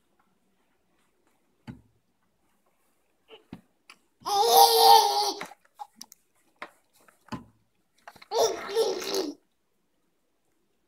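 A baby babbling in two loud outbursts, the first about four seconds in and the second near the end, with a few faint small knocks between.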